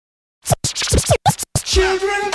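Silence, then about half a second in a run of quick turntable scratches with swooping pitch, broken by short gaps; near the end a hip hop beat comes in with a bass hit and a held tone.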